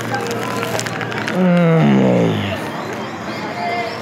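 A man's long closed-mouth "mmm" of enjoyment while chewing, sliding down in pitch and coming in two overlapping parts about a second and a half in, with light chewing clicks before it.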